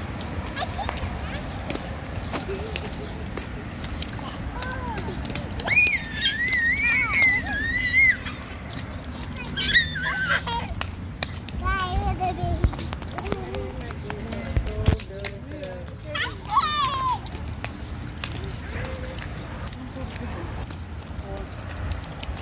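Toddlers' high-pitched squeals and babble in bouts, loudest about six to eight seconds in and again around ten and sixteen seconds, with light splashing footsteps in shallow rain puddles on wet pavement.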